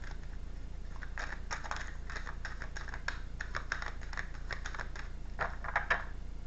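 A deck of oracle cards shuffled by hand: irregular clicks and slaps of the cards against each other, coming in small clusters, a busier run near the end.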